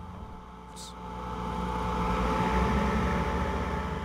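M1128 Stryker Mobile Gun System, an eight-wheeled armored vehicle, driving past: its diesel engine running with tyre noise, growing louder to a peak about two and a half seconds in as it comes close, then easing slightly.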